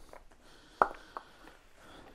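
A cover on the end of a small battery box being opened by hand: a couple of faint clicks about a second in.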